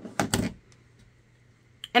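Two quick knocks of a hard plastic ink pad case being set down on the craft desk, then near quiet with one faint tick.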